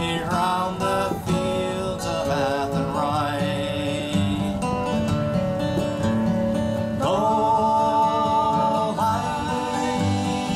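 Live acoustic guitar strummed under a slow sung melody, with a long held note about seven seconds in.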